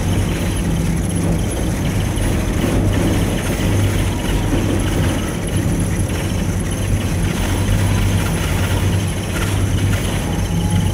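Gondola lift cabin running down its cable, heard from inside the cabin as a steady low hum with a rumbling noise over it.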